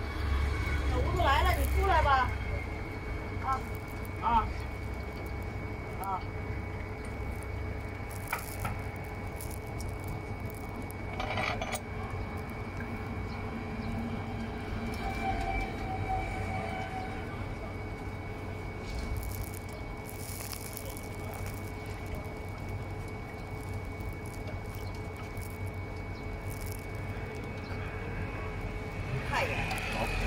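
A few scattered light metal clicks and knocks of a hex key and bolts as a brake disc and caliper bracket are fitted to an electric scooter's hub motor, over a steady low rumble and hum. Brief voices at the start.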